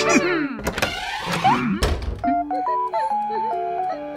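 Cartoon sound effects: a falling glide at the start, a thunk under a second in and a heavier, deeper thunk near two seconds in, then background music of short stepping notes comes in.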